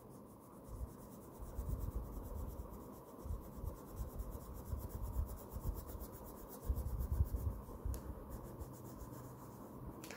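Pink crayon colouring on notebook paper: a continuous run of scratchy back-and-forth rubbing strokes, heavier for a moment about seven seconds in.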